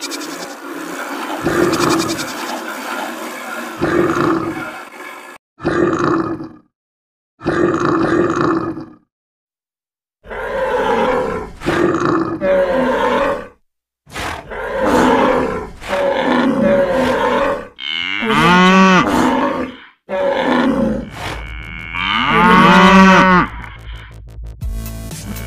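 A string of animal call sound effects, one after another with short silent gaps: grunts and roars, then long pitched calls near the end.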